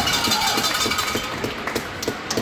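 Ice hockey game noise: spectators' voices mixed with the clatter of sticks and skates on the ice, with a run of short knocks and a few sharp clicks.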